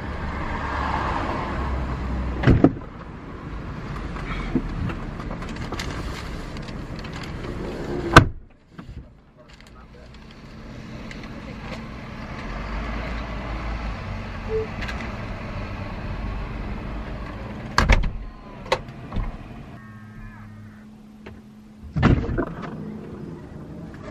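Doors and tailgate of a parked car being shut, heard from inside the empty cabin: street noise comes in through the open car, a loud slam about eight seconds in, then more knocks and thuds later on, one just after a short motor hum as the powered tailgate closes near the end.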